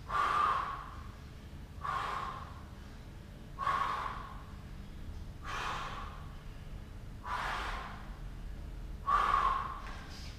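A man breathing hard during knuckle press-ups, pushing out a strong breath about every two seconds, six times in all.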